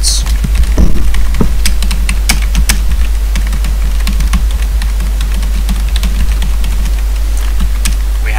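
Computer keyboard typing: quick, irregular key clicks as a line of code is entered, over a steady low hum.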